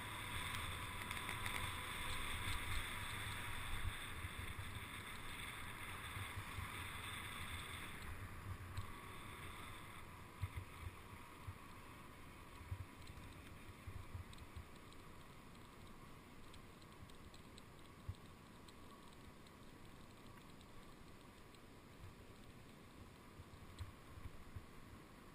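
A bicycle coasting fast down a wet paved road: wind rushing over the camera microphone and tyre hiss on the wet asphalt. It eases off and grows quieter after about eight seconds, with a few small knocks later on.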